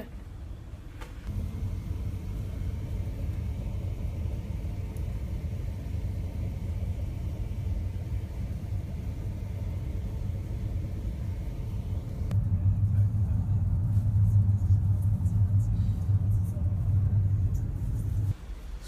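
Steady low rumble of a passenger ferry's engines and hull, heard from on board. It gets louder about a second in, and louder and more muffled again near twelve seconds.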